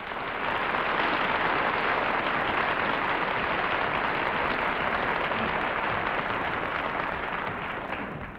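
Studio audience applauding, a steady wash of clapping that swells in the first half second and tapers off near the end.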